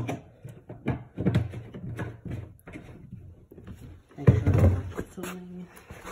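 Clunks and knocks of a red plastic gas can being handled and set down on a concrete floor after refuelling, with a loud heavy clunk a little after four seconds in.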